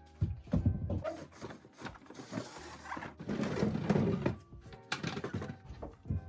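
A wooden table being shifted into place under a bench: several knocks and bumps, with a longer stretch of rubbing and scraping in the middle. Background music plays underneath.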